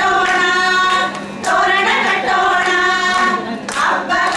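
A group of women singing a song together in unison, holding long notes, with short breaks for breath about a second in and again near the end.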